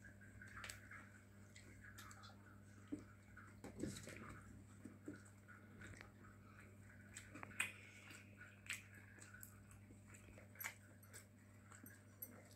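Near silence: a child quietly chewing and biting pizza, with scattered faint clicks and a steady low hum underneath.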